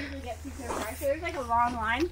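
Quiet speech: a person talking softly, over a steady low wind rumble on the microphone.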